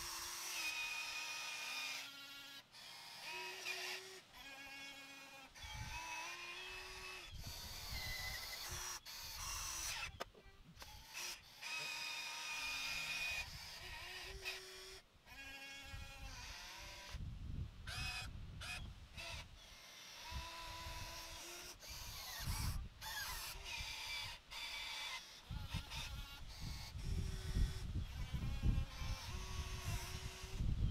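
Small electric gear motors of a 1/14 RC excavator whining in short stop-start bursts as the boom, arm, bucket and swing are worked, the pitch jumping from one motor to another. Near the end, dirt crunches and scrapes as the bucket digs and lifts a load of soil.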